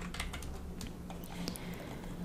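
Scattered faint clicks, several in the first half-second and a sharper one about a second and a half in, over a low steady hum.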